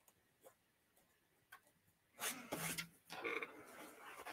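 Mostly quiet, with two faint ticks in the first half. From about two seconds in, heavy upholstery fabric rustles and slides as the appliquéd pillow top is handled and turned over on the table.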